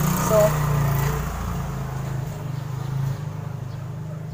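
A vehicle engine drones steadily and eases off after about three seconds.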